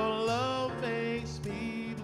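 Male vocalist singing a held, wavering wordless note that ends about halfway through, over grand piano accompaniment that carries on after the voice stops.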